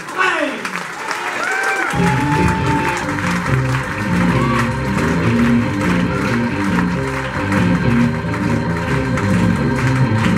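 Audience applauding, then about two seconds in a band starts playing steady sustained organ chords with bass under the continuing applause.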